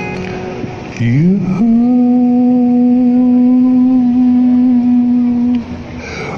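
A man singing one long held note over a fading acoustic guitar chord. About a second in, the voice scoops up into the note, then holds it steady for about four seconds before breaking off.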